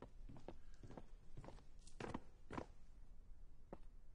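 Footsteps of leather dress shoes walking down hard steps, a faint knock about every half second, with a last step near the end.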